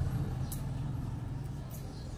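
Steady low rumble of background noise, with two faint brief clicks.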